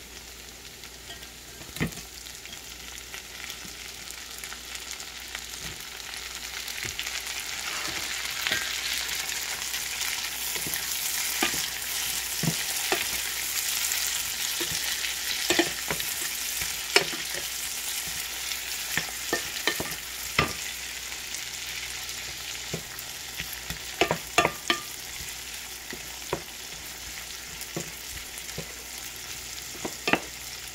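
Whole raw shrimp frying in garlic butter in a frying pan: a steady sizzle that builds over the first ten seconds or so as the shrimp heat up. Now and then come sharp knocks as the shrimp are stirred and turned with a wooden spoon, several of them close together about three-quarters of the way through.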